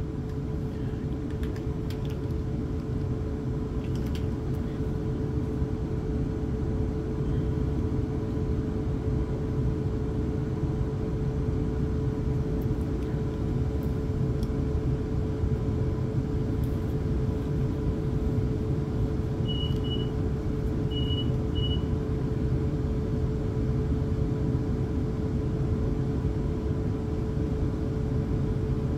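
Steady interior hum and rumble of a stationary Class 450 Desiro electric train, with a constant whine from its onboard equipment. Two pairs of short high beeps sound a little past the middle.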